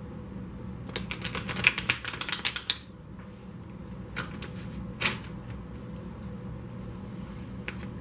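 A quick run of light, sharp clicks lasting about two seconds, followed by two single clicks a little under a second apart, over a faint steady room hum.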